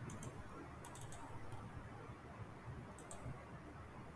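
Computer mouse clicking a few times, some clicks in quick pairs, over a faint low hum.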